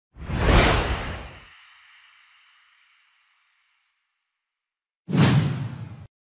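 Two whoosh sound effects of an intro animation: the first swells just after the start and fades away in a high shimmering tail over two or three seconds, the second comes near the end and cuts off sharply.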